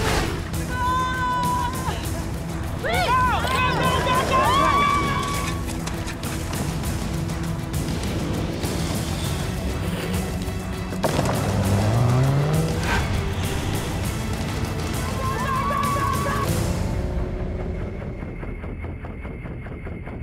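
Off-road 4x4 engines revving and tyres squealing over music, with many sharp knocks and impacts. An engine note rises about eleven seconds in. Near the end the vehicle sounds drop away and the music carries on alone.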